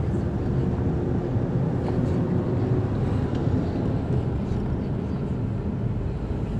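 Engine and road noise from inside a moving vehicle in city traffic: a steady low rumble.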